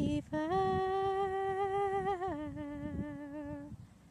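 A voice humming a slow tune in long held notes: a brief break, a higher note held for about two seconds, then a step down to a lower note that stops shortly before the end.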